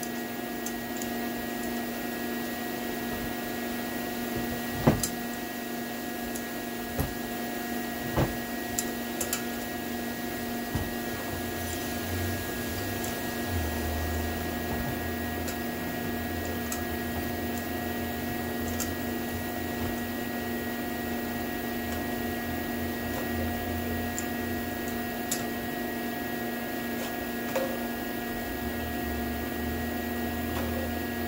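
Pliers working a broken exhaust manifold bolt loose from an LS aluminium cylinder head: a handful of sharp metallic clicks and knocks, the loudest about five and eight seconds in. Under them a steady machine hum of several fixed tones runs throughout.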